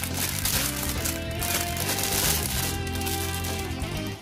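Thin clear plastic bag crinkling and rustling as it is handled and opened, over steady background music.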